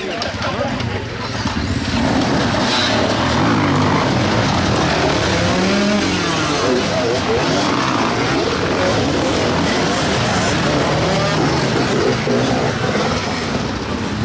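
Several enduro dirt bikes revving and riding off together, their engines rising and falling in pitch and building up about two seconds in, with people's voices underneath.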